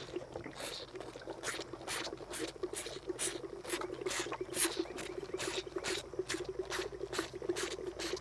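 Cattle feeding: a cow crunching feed out of a tub gives crisp, irregular clicks about three times a second, while a calf sucks milk from a bottle.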